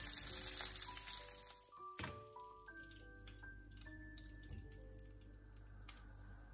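Hot oil sizzling in a frying pan as fried chicken thighs are lifted out, fading away over the first second or two. After that, quiet background music of soft held notes.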